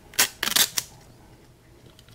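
Clear plastic protective film being peeled off the face of a small digital voltmeter display: a brief crackle, then a longer rip of about half a second, both within the first second.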